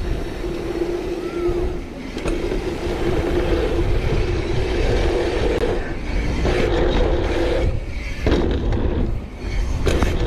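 Mountain bike riding a dirt-jump line: tyres rolling on packed dirt and wind on the microphone, with the rear freehub buzzing steadily while coasting, cutting out briefly a few times.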